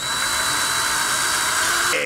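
Small electric drill fitted with a 1.5 mm bit, running at speed with a steady high whine that starts abruptly and cuts off near the end.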